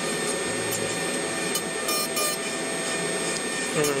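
Gesswein Power Hand 3 power carving handpiece running steadily as its bit thins and contours carved wooden feathers, over the steady rush of a dust collector.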